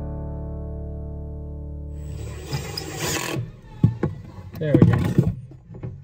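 A strummed guitar chord from background music rings out and fades over the first two seconds or so. Then come scattered clicks and knocks of hand work, with a brief vocal sound about five seconds in.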